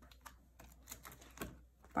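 Faint clicks and crinkles of the clear plastic sleeves of a ring-binder photocard album being handled as a page is lifted and turned.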